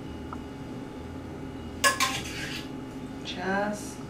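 A spoon clinking sharply on the dishes twice in quick succession, about two seconds in, while blackberries are spooned onto a waffle.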